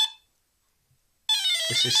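Brushless ESC sounding long, warbling programming-mode beeps (dashes): one ends just after the start, and after about a second of silence another begins, announcing the Soft Acceleration Startup menu item.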